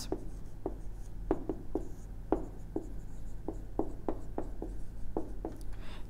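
A marker writing on a whiteboard: a string of short, irregular strokes, a couple each second, as the equation is written out.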